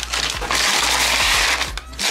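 Brown packing paper being crumpled and stuffed into a cardboard box: a loud, dense crinkling rustle that starts about half a second in and dips briefly near the end.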